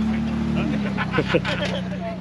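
Ford Bronco engine running steadily at low revs as it crawls over icy rocks, fading out near the end, with people's voices over it.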